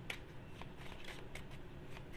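A deck of tarot cards being shuffled by hand: quiet, with many light, quick clicks and rustles of card edges sliding together.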